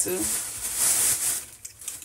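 Plastic packaging rustling and crinkling for about a second as it is handled, then fading.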